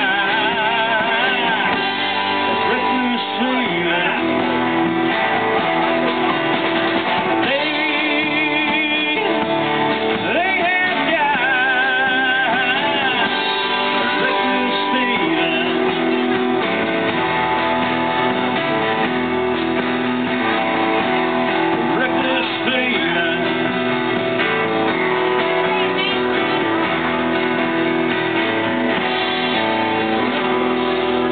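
Live country band playing a song on electric guitar, bass guitar, drums and acoustic guitar, with a lead line of wavering, bent notes about a third of the way in.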